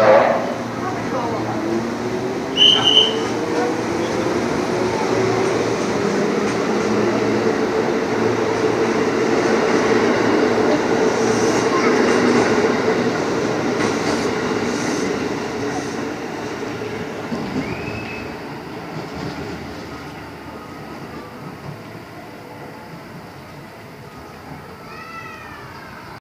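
A JR 205 series electric commuter train moves past along the platform. A motor hum rises in pitch over the first several seconds as it gathers speed, then settles into the steady running noise of the cars passing, which fades gradually over the last ten seconds. A brief shrill tone comes about three seconds in, and a few short calls arching in pitch come near the end.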